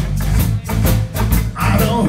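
Live rock-and-roll band playing: electric guitar over bass and a steady beat, with a voice starting to sing near the end.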